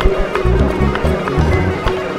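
Malian band music: a bass line under plucked ngoni and struck balafon notes, with hand percussion marking a regular beat.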